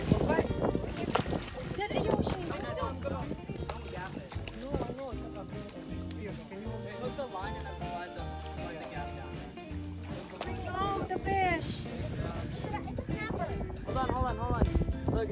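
Background music with a steady, repeating bass line, with voices over it.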